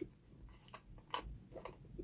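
A few faint, scattered clicks and taps of hard plastic being handled: hands turning a plastic toy piggy bank near its twist-off stopper.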